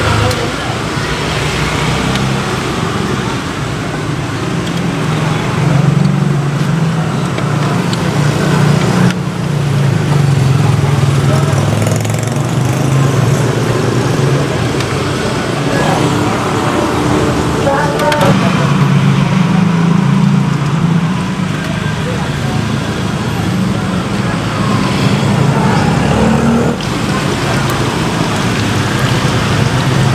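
Steady roadside traffic noise with indistinct voices mixed in.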